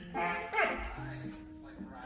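A dog giving a short yelping bark that falls in pitch, about a quarter second in, over light acoustic background music.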